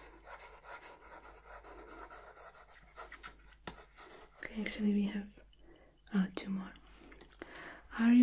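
A pen writing on paper, a soft, faint scratching. Twice in the second half it is broken by short soft murmurs or hums of a woman's voice.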